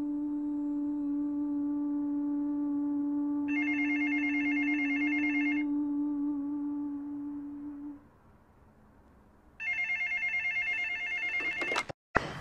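A telephone ringing with a trilling electronic ring, twice, each ring about two seconds long; the second ring stops as the handset is picked up. Under the first ring a steady low drone runs on and fades out about eight seconds in.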